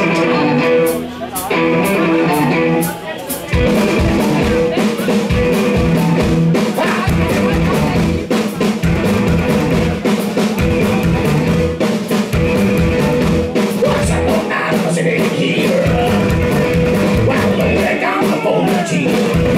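Live rock band of upright double bass, electric guitar and drum kit playing loudly. A sparser opening riff breaks off twice before the full band comes in with a driving drum beat about three and a half seconds in.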